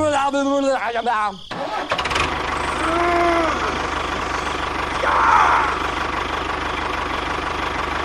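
A brief high-pitched voice exclamation, then about two seconds in a tractor engine starts and runs steadily with a fast low chug.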